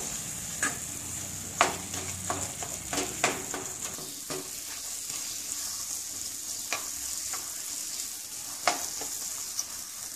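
Wooden spatula stirring thick moong dal halwa as it fries in a nonstick pan: a steady sizzle, broken now and then by the spatula knocking and scraping against the pan.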